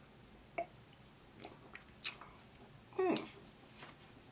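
Mouth sounds of drinking from a small plastic bottle: a few short, quiet swallows and lip smacks, then a murmured 'hmm' about three seconds in.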